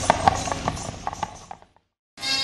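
A run of irregular sharp knocks and taps, about three or four a second, fading out to silence about a second and a half in.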